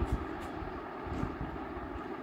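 Steady low background rumble with no clear events, like distant traffic or a running machine.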